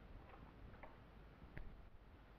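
Near silence: quiet room tone with a few faint ticks, the clearest about one and a half seconds in.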